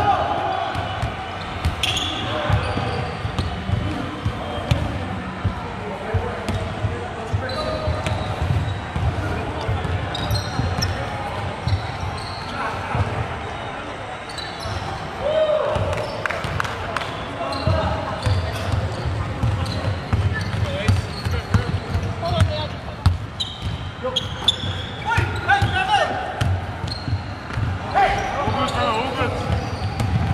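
A basketball bouncing on a hardwood court, with scattered short knocks, and players' distant shouts and calls echoing in a large sports hall.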